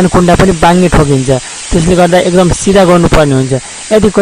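A person's voice in loud phrases with a few short pauses; no drill is heard running.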